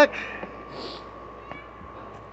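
A cat meowing once, briefly, right at the start, followed by a few faint, higher cries and light clicks.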